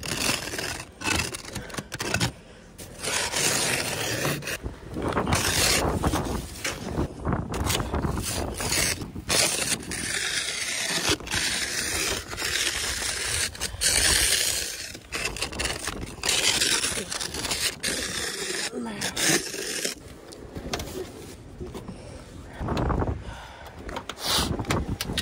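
A snow brush and scraper scraping and sweeping packed snow and ice off a car's windows and body, in a long run of rough strokes with short pauses between them.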